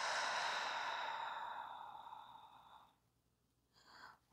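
A woman's long, deliberate sighing exhale through the mouth, a breathy rush that fades away about two and a half seconds in.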